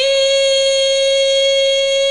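A sinden, a Javanese female singer, holding one long, steady high note with no wavering in pitch.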